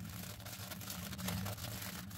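Soft paper or plastic wrapping rustling and crinkling irregularly as hands unwrap an earphone cable, over a low steady hum.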